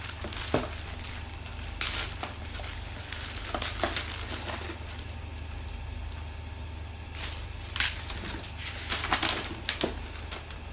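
Clear plastic packaging bags crinkling and rustling as they are handled, in irregular short bouts with a few sharp taps.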